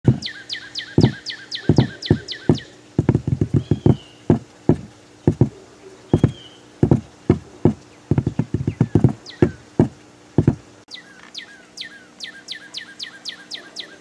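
A northern cardinal singing fast runs of falling high notes, about seven a second, in three bursts. Irregular loud knocks sound underneath, the loudest thing heard, and stop about eleven seconds in.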